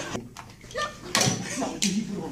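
Excited voices of several people reacting, with a few short, sharp noises about a quarter-second in, a second in, and near the end.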